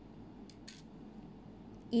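Plastic ball-and-stick molecular model being picked up by hand, over quiet room tone: a small click about half a second in, then a brief rustle.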